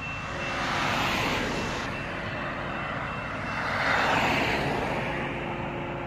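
Road traffic noise: two swells of passing-vehicle tyre and engine sound, one about a second in and a louder one about four seconds in, over a faint steady engine hum.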